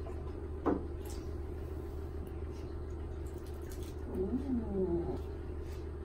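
A newborn baby fussing with a short, wavering whimper about four seconds in, over a steady low hum. A single short knock sounds less than a second in.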